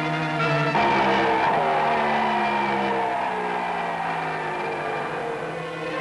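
Science-fiction spaceship sound effect: a rushing hiss with slowly falling tones, starting about a second in and gradually fading, over an orchestral score, as a spaceship comes in to land.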